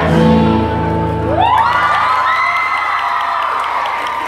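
An acoustic guitar chord strummed and left ringing, then a group of teenagers whoop and cheer, their voices sliding up together about a second and a half in and holding a high cry: the song has ended.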